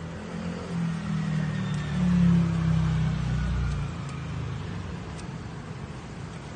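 A motor vehicle's engine passing close by, swelling to its loudest about two seconds in and fading away by about four seconds, over a steady background hum.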